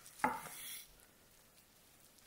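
Chef's knife slicing through cooked corned beef onto a wooden cutting board: one short slicing stroke in the first second.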